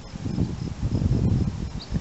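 Wind buffeting the microphone, an uneven low rumble, with a few faint high chirps from birds.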